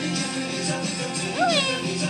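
Domestic cat meowing once about one and a half seconds in, a short call that rises and then falls in pitch, over background music.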